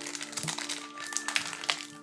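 Soft background music with sustained tones, over irregular crinkling and crackling of a foil trading-card pack wrapper being handled and torn open.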